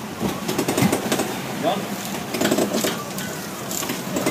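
Indistinct talk from several men over the steady hum of the boat's engine idling, with scattered knocks and clatter on deck.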